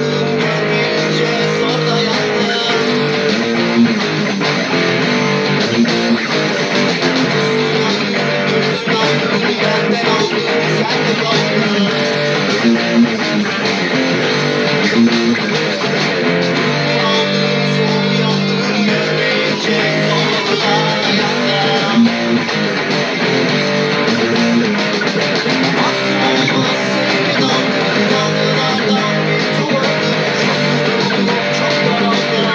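Cort electric guitar played continuously, picking notes and chords of a rock song, with bass and backing music underneath.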